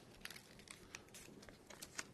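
Faint crinkling and scattered light ticks of a dollar bill being creased and sink-folded by hand.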